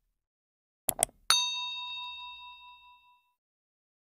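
Subscribe-animation sound effects: two quick clicks as the cursor presses the button, then a notification bell ding that rings out and fades over about two seconds.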